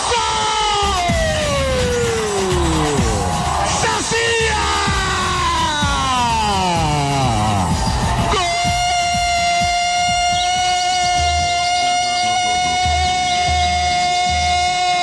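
Two long sweeps falling steeply in pitch, each lasting about four seconds. From about eight seconds in comes electronic music: a held synth chord over a pulsing bass beat.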